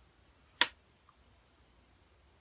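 A single sharp click, followed by a faint small tick about half a second later.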